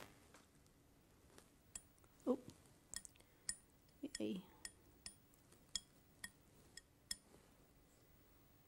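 Steel painting knife pinged with a fingertip over and over, flicking white paint off the blade in a spatter: a dozen or so small metallic ticks, each with a brief ring, about two a second.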